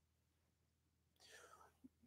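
Near silence: room tone, with a faint breath-like sound shortly before the end.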